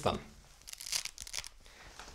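Hook-and-loop waistband adjuster on Karpos Midi Shell trousers crackling faintly as it is pulled apart, a short run of crackles from about half a second in. Laid on loosely instead of pressed firmly, the fastener lets go easily.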